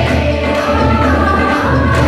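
A large choir of children and adult singers performing a Rajasthani folk song together, in full voice over a steady beat.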